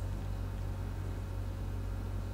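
Room tone: a steady low hum with faint hiss and no distinct events.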